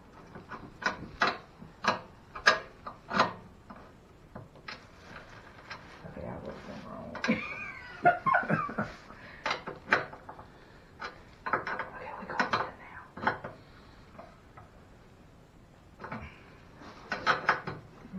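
Irregular clicks and knocks of metal parts and fasteners being handled while a wheel is bolted onto a new portable generator's frame, with a brief vocal sound about halfway.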